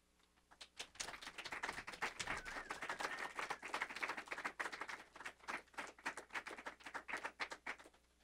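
Audience applauding, starting about a second in after the end of a live reading, made up of many quick, uneven claps. It cuts off suddenly near the end.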